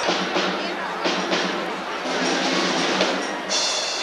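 Mummers string band playing, drum and percussion strokes to the fore, with people talking over it; sustained instrument tones come in near the end.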